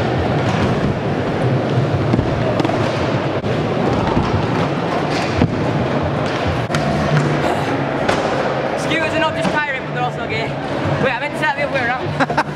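Scooter and skateboard wheels rolling over the skatepark ramps in a large indoor hall, with a few short knocks from landings and deck impacts. A steady din of indistinct voices and music runs under it.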